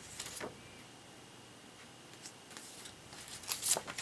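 Sheets of paper and card being handled and shuffled: short, soft rustles, a few just after the start and a louder cluster near the end.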